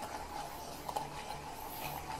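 Gyroball wrist exerciser's rotor spinning inside its clear shell as the ball is rotated by hand to build speed, a faint steady whir.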